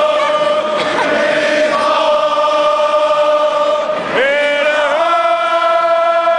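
Football supporters' crowd singing a chant together in long held notes, with the pitch dipping and rising about four seconds in before the next sustained note.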